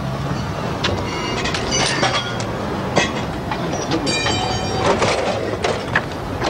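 Steady street traffic noise, with several sharp metallic clinks and two brief high ringing squeals, about a second in and about four seconds in.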